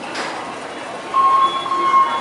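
Metro fare gate sounding a steady electronic beep that starts about a second in, as a ticket or card is refused at the gate. Behind it runs a steady station rumble.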